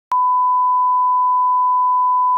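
1 kHz reference tone of a colour-bar leader: a single loud, steady pure tone that starts with a click just after the beginning and holds without change.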